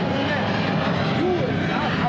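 Low, untranscribed voices over a steady, even background rumble from the open-air balcony high above the city.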